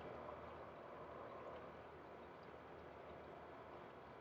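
Faint, steady outdoor background noise with no distinct bird calls or other events.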